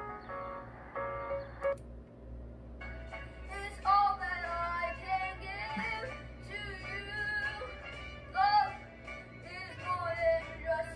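Talent-show video played back through a computer speaker in a small room: a piano piece ends with a few short repeated notes in the first two seconds, then after a brief pause a young solo singer starts a song.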